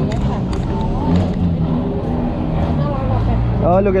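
People talking over a steady low rumble of street traffic.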